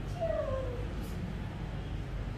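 A short cry lasting about half a second, falling in pitch, heard just after the start over a steady low background hum.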